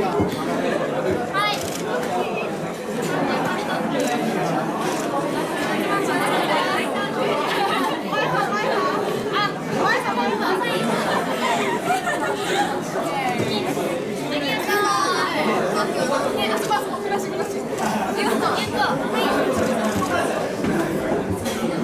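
Group chatter: many overlapping girls' voices talking at once, steady throughout.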